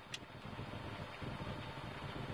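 Faint, steady low rumble of a vehicle's cabin, with one small click just after the start.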